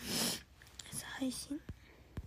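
A short rush of breathy noise close to the phone microphone, then a few soft, whispered syllables of a young woman's voice about a second in.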